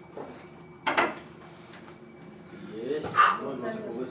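A man's short vocal sounds: a sharp, breathy burst about a second in, then a brief voiced sound with a rising-and-falling pitch, louder, around three seconds in.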